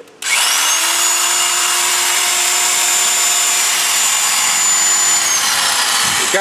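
Electric drill with a half-inch masonry bit running steadily as it starts boring into a concrete wall. The motor whine spins up about a quarter second in, holds, and winds down near the end.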